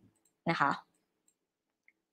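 Brief speech: a woman says a short Thai phrase about half a second in, and the rest is silent.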